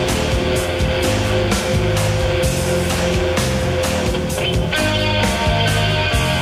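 Psychedelic rock band playing an instrumental passage: electric guitar and bass holding sustained notes over a steady drum beat.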